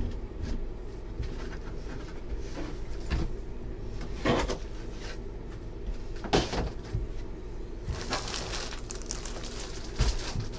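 Handling noise on a tabletop: a few knocks and bumps as things are set down and moved, then plastic wrapping crinkling near the end.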